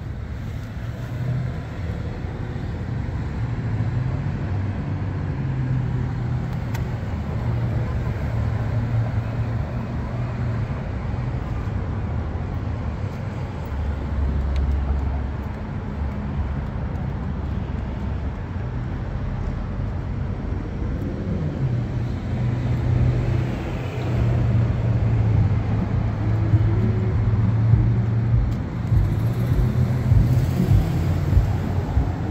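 City street traffic: motor vehicle engines running and passing, with a low rumble that rises and falls.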